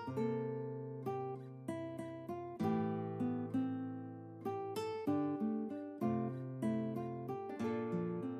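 Background music on acoustic guitar: gently picked notes and chords, each ringing and dying away before the next.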